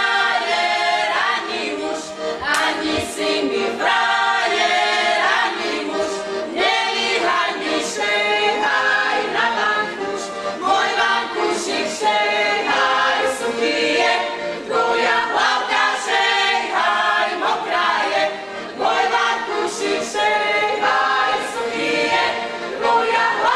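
Slovak women's folk singing group singing a folk song together, several voices at once, loud throughout and phrased in short lines.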